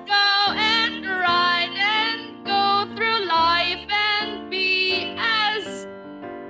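A woman singing a melody of held notes with vibrato over a steady keyboard accompaniment, part of an improvised musical number.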